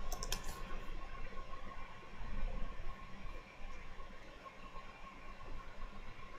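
Computer keyboard keystrokes: a quick cluster of key clicks near the start as a Shift-Command shortcut is pressed, then only faint low background.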